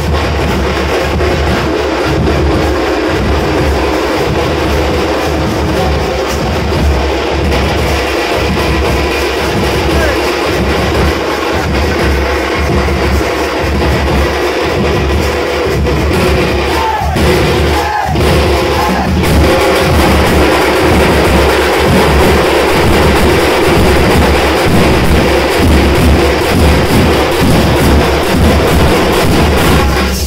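A thappu (Tamil frame drum) troupe drumming together with sticks, a loud, steady rhythmic beat kept up without a break.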